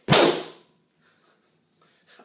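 A single hard smack of a racket swung down onto something, hard enough to bend the racket. The sharp crack comes right at the start and dies away within about half a second.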